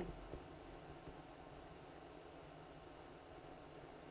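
Faint squeaks and scratches of a felt-tip marker writing on a whiteboard, a series of short strokes that are clearest in the second half.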